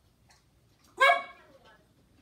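A dog barks once, a single short bark about a second in that rises in pitch at its start.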